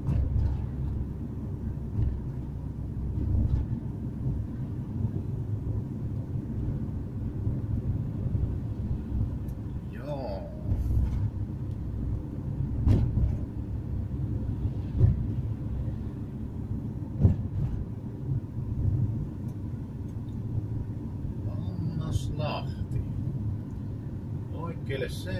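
Road and engine noise inside a moving car's cabin: a steady low rumble, with a few short knocks about halfway through.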